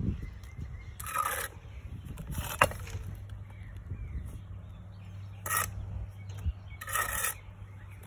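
Steel brick trowel scraping wet mortar against brick: four short scrapes, with a sharp tap about two and a half seconds in, as bricks are set and the squeezed-out mortar is struck off. A steady low hum runs underneath.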